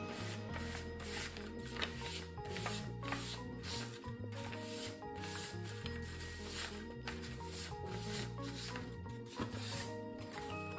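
Background music with a bass line and a steady beat, over the soft rubbing of a hand blending colour on a paper plate.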